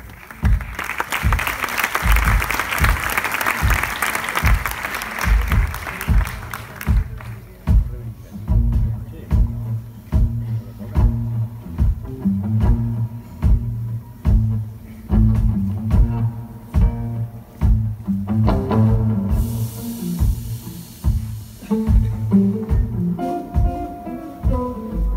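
Live band opening a song: audience applause for the first seven seconds or so over a repeating bass line and kick drum, which carry on throughout. Chords and a cymbal wash come in about two-thirds of the way through.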